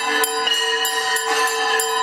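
Temple bells ringing without pause for the arti, struck about three times a second over a sustained ringing tone.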